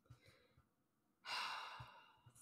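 A person lets out a breathy sigh a little past halfway through, a single exhale that fades out after well under a second; the rest is near silence.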